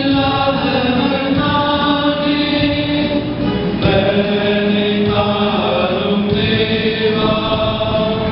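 Church choir singing a hymn in Tamil, in long held notes that move from one pitch to the next.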